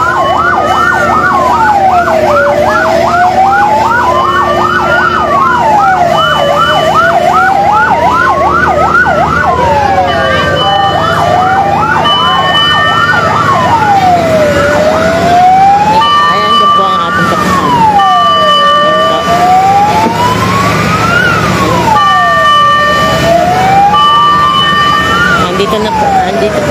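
Fire truck sirens sounding at a fire scene. A slow wail rises and falls about every four seconds throughout. A second siren's fast yelp overlaps it for roughly the first ten seconds, and steady tones cut in and out over the later part.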